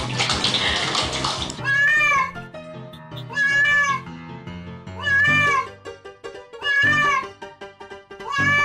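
Water splashing in a bathtub as a kitten scrambles in it, cut off abruptly, then a wet cat being held under a shower meowing four times, each call long and rising then falling, about a second and a half apart, over background music.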